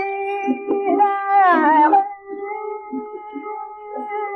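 Early 78 rpm shellac gramophone recording of a male ghazal singer with harmonium, in raga Bhairavi: a long held sung note that slides down in pitch about a second and a half in, then another note held steadily.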